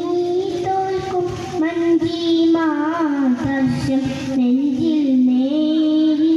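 A young boy singing a madh (devotional song in praise of the Prophet) into a handheld microphone, amplified over a PA, holding long notes that waver and bend in ornamented runs.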